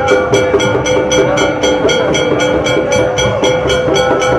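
South Indian temple procession music: a sustained reed-horn melody, of the nadaswaram kind, over metallic percussion strikes at a steady beat of about four a second.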